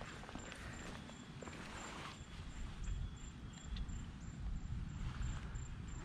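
Faint splashing and rustling as a bullseye snakehead is grabbed at the water's edge and lifted out of the canal by hand, over a low fluctuating rumble.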